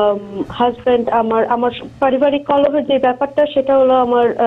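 Speech only: a woman speaking Bengali over a telephone line, the voice thin and narrow, with nothing above the phone band.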